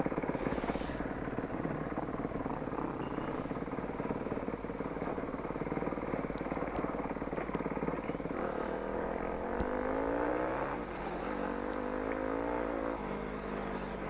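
Yamaha Ténéré motorcycle engine running on a loose stony track, with the rattle of the bike bouncing over the stones. In the second half the revs climb and drop back twice.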